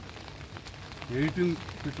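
Steady rain falling and pattering on umbrellas, with a man's voice speaking briefly about a second in.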